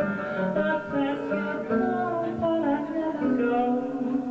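Acoustic guitar playing a slow folk ballad, with a singing voice over it.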